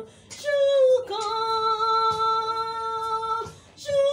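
A woman singing a gospel song: a short falling phrase, then one long note held steady for about two seconds.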